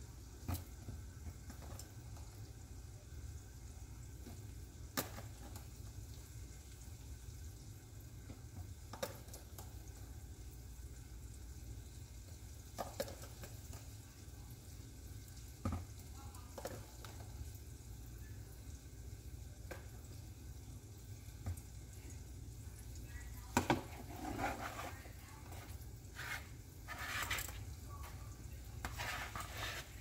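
Metal tongs clicking against a plastic container and a mixing bowl as egg-coated okra pieces are lifted out and dropped into flour: scattered single clicks, then a run of louder knocks and scrapes near the end, over a low steady hum.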